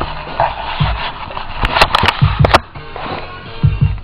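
A hip-hop beat playing loud through studio monitor speakers: deep kick drums falling in pairs, with a run of sharp snare-like hits about halfway through, over a sustained sampled loop.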